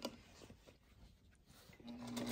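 Near silence with a few faint small clicks while fabric is lined up under the presser foot; a Singer sewing machine starts running just before the end.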